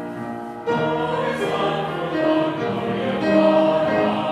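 A held piano chord dies away, then a congregation comes in singing a hymn a little under a second in, the voices carrying on with the tune.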